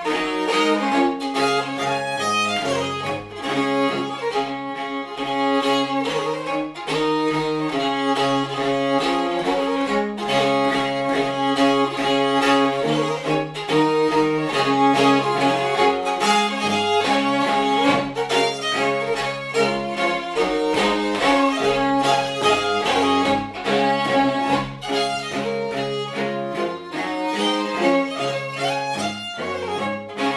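Scottish fiddle tune played as a duet on violin and cello, both bowed, the fiddle carrying the melody over a moving cello bass line, without a break.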